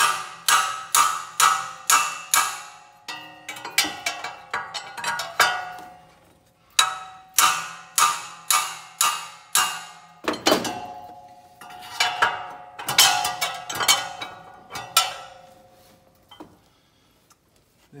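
Repeated sharp metal-on-metal strikes on a wrench fitted to a fan clutch nut, two to three a second in several runs with short pauses, each strike ringing briefly. It is an attempt to shock the fan clutch nut loose from the water pump, and the nut does not break free.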